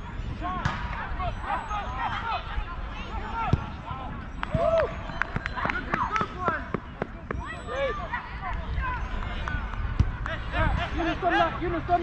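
Players' voices shouting and calling across an outdoor football pitch, with several sharp thuds of a football being kicked.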